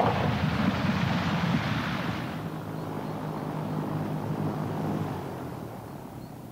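Four-engined propeller airliner's engines running as it rolls out after landing. A broad rushing noise is loudest for the first two seconds and then dies away, leaving a lower steady engine hum that fades near the end.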